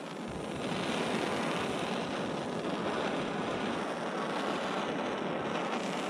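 Handheld propane torch burning with a steady rushing hiss, its flame played on a frozen outdoor spigot's threads to thaw the ice.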